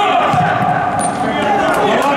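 Futsal being played in a sports hall: players calling and shouting to each other over the ball being kicked and bounced on the hard court floor.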